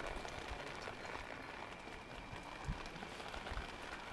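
Water draining out of a just-watered hanging flower pot, dripping and trickling steadily onto the ground below.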